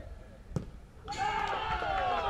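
A single sharp thud of a football about half a second in, followed from about a second in by several voices shouting and cheering together as a penalty goes in.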